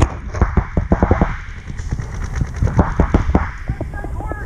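Paintball markers firing rapid strings of shots, in several quick bursts with a lull in the middle.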